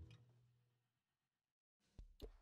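Near silence. A sustained tone fades out right at the start, then nothing.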